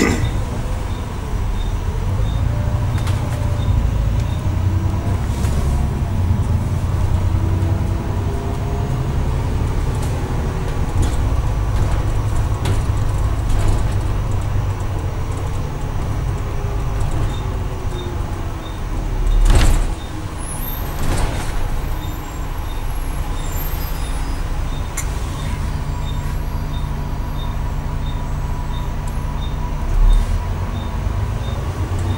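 Diesel bus engine and drivetrain heard from inside the upper deck of a double-decker, running continuously with its note rising and falling as the bus slows and pulls away through roundabouts. About two-thirds of the way through there is a loud short burst of noise, and a faint regular ticking can be heard in parts.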